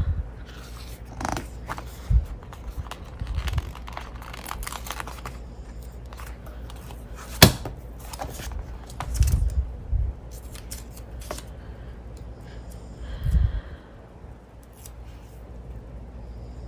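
Paper sticker sheets and planner pages being handled: rustling, with stickers peeled off their backing and pressed down. A sharp click about halfway through is the loudest sound, and a few dull knocks on the tabletop follow.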